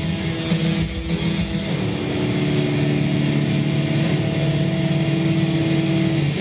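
Industrial metal played live: heavily distorted electric guitar and bass guitar, settling into a held, droning chord from about two seconds in.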